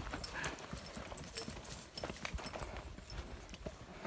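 Footsteps walking on a dry dirt trail: irregular light crunches and taps, over a low rumble.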